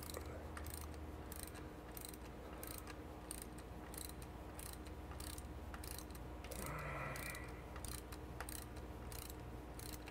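Hand ratchet wrench clicking at an even pace, about three clicks every two seconds, as it loosens the quad bolt on an aircraft integrated drive generator's quad-ring clamp.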